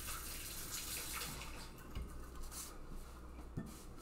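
Paring knife slicing a peach half into chunks on a wooden cutting board: faint cutting sounds, with two soft knocks of the blade on the board, about two seconds in and near the end.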